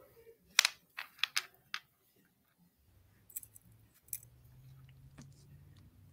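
Small, sharp metallic clicks and clinks from crimping pliers and beads on beading wire as a crimp bead is squeezed flat: five in quick succession within the first two seconds, then two fainter ones.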